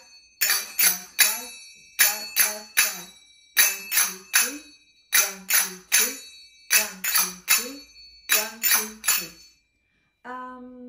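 Brass finger cymbals (zills, sagats), two pairs played together, struck in a triplet pattern: right, left, right. There are six groups of three bright ringing strikes, a group about every one and a half seconds, and the playing stops about half a second before the end.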